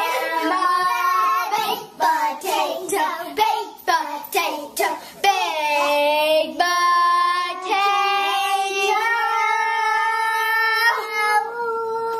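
A child singing, with phrases that break up in the first half and long held notes through the second half.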